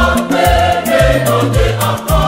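Choir singing an Ewe gospel song over bass and drums, with a steady beat about twice a second.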